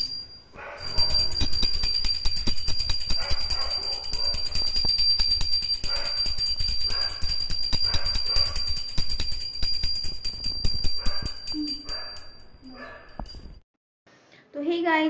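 Small brass puja hand bell rung rapidly and without pause for an aarti, its clapper striking many times a second with a steady high ringing, with music underneath. It fades and stops shortly before the end.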